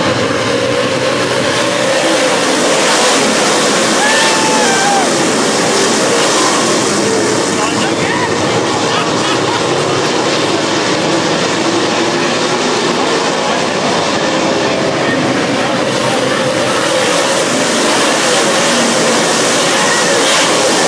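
A field of dirt-track race cars running at speed around the track, their engines a loud continuous drone that rises and falls in pitch, with crowd voices mixed in.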